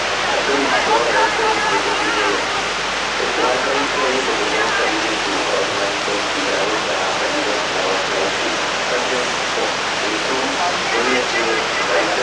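Rushing whitewater of a canoe slalom course, a steady roar, with voices talking indistinctly over it.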